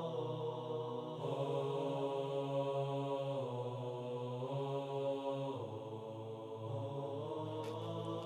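Soft background music of sustained, wordless chant-like vocal chords, moving to a new chord every two seconds or so.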